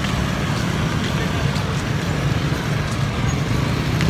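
Steady traffic noise of a busy street: a low rumble of vehicle engines, with a car passing close at the start.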